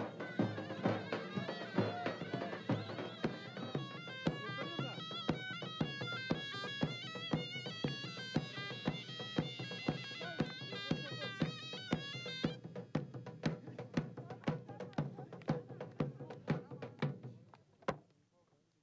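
Folk dance music: a reedy wind instrument plays a wavering, ornamented melody over a steady drum beat. The wind instrument drops out about twelve seconds in, leaving the drum beating alone until it fades out near the end.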